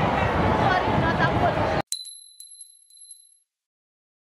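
Crowd noise and voices cut off abruptly about two seconds in. A bright bell-like ding follows, with a few quick repeated chimes that fade out over about a second and a half: a logo sting.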